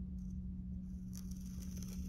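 Soft scraping of a pottery knife blade drawn down through a soft clay slab, faint under a steady low electrical hum.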